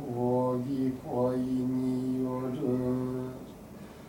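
A male Shinto priest intoning a norito prayer in three long, drawn-out held notes with slight slides in pitch between them. The chant fades near the end.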